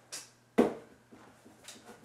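Plastic toiletry bottles handled on a shelf: a light rustle, then one sharp knock about half a second in as a bottle is set down, and a faint click near the end.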